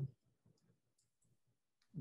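Near silence, broken by a few faint clicks about half a second and a second in.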